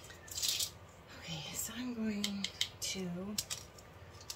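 A woman's voice speaking briefly, with a few sharp light clicks of small objects being handled on a work table and a short rustle about half a second in.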